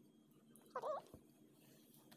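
A baby's short, high-pitched squeal with a wavering pitch, about three-quarters of a second in.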